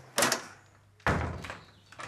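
A short scraping rustle, then a dull thump about a second in that dies away.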